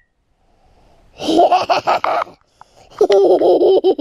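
A child laughing in two high-pitched bursts, the first starting about a second in and the second near the end.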